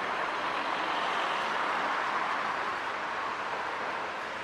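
A car driving slowly past at close range: a steady hiss of engine and tyre noise.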